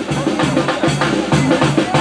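Mexican banda music: held low brass notes over bass drum and snare keeping a steady beat.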